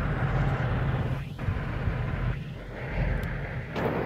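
Steady low rumble of a camper van's engine, with a rushing noise over it, heard from inside the cab. It dips briefly twice.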